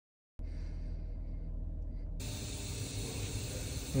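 Silence, then about half a second in a steady low hum of workshop background noise cuts in suddenly. About two seconds in, a hiss joins it.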